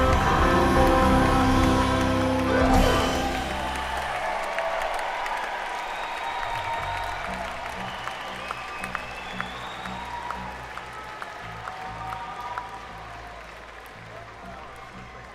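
A live band holds the song's final chord, which ends about three seconds in. Audience applause and cheering follow, fading down with a few sharp claps standing out.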